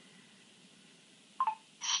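HTC 8X Windows Phone voice-command system giving a short beep about a second and a half in as it accepts the spoken command, followed near the end by its synthesized voice beginning to say "Starting Netflix".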